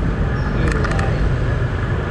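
Steady road-traffic noise of motorbikes and cars, heard from a moving motorbike, with a low rumble throughout and a few quick clicks about a second in.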